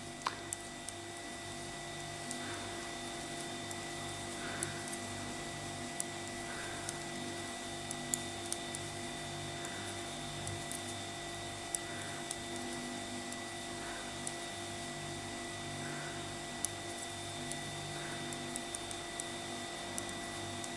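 Metal knitting needles giving faint, irregular clicks as a row of stitches is purled, over a steady electrical hum.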